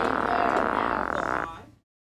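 A class of young children reading aloud together in unison, a blur of many voices. It cuts off abruptly near the end.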